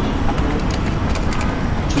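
Light computer-keyboard typing, a few faint key clicks, over a steady low background rumble.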